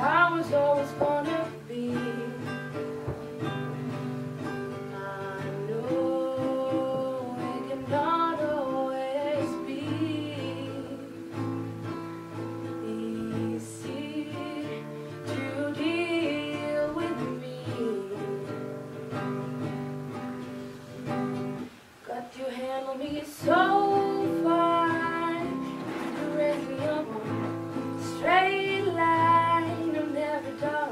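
A teenage girl singing a song while playing an acoustic guitar. The singing breaks off briefly a little past two-thirds of the way through, then comes back louder.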